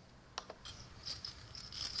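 Faint clicks at low level: one sharper click about half a second in, then a few light ticks and a faint high patter.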